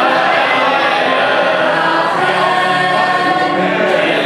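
A group of voices singing a hymn together in sustained sung phrases, with a man singing into a handheld microphone among them.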